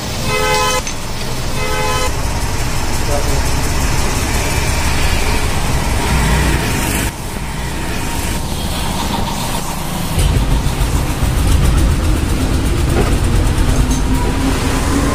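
A vehicle horn beeps twice in quick succession, then steady traffic and workshop noise carries on, with a heavier low rumble near the end.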